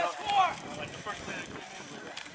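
People shouting, a call in the first half second and then fainter voices over a low outdoor murmur.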